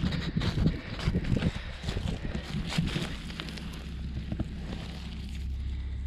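Wind on the microphone outdoors, with irregular low thumps and rustles of walking and handling over about the first half, settling into a steady low wind rumble.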